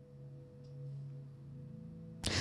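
Soft background music: a faint sustained low chord of a few steady notes, swelling slightly about a second in.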